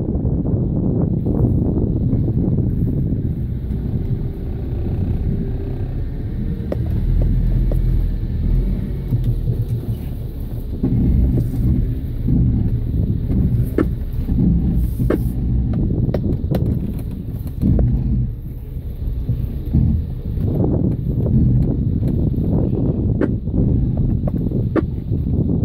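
Off-road vehicle's engine idling, a steady low rumble, with a few faint clicks now and then.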